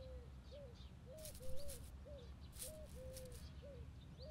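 A bird calling: a run of short, low notes, each rising and falling, about two a second, with faint higher chirps from other birds.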